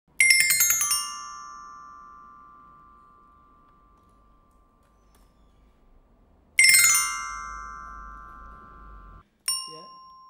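Solenoid-driven glockenspiel: push-pull solenoids strike its metal bars in a rapid descending run of notes, left to ring and fade. A second run follows about six and a half seconds in and is cut off suddenly, then a single note is struck near the end.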